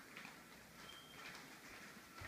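Near silence: faint footsteps on a hardwood floor, a few soft taps, with a faint steady high tone underneath.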